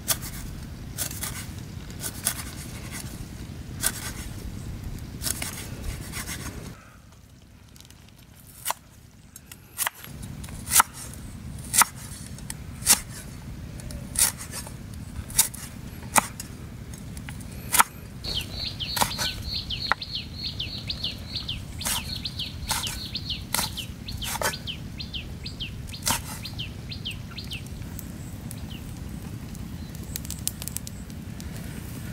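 Cleaver chopping on a wooden stump block, sharp knocks about one a second with a short lull partway through. From about the middle, a bird calls in a rapid, repeated series of high chirps.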